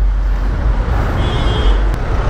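Riding noise from a Yamaha NMAX single-cylinder scooter moving slowly in traffic: a steady, loud low rumble with surrounding road and traffic noise. A faint high tone shows up briefly in the middle.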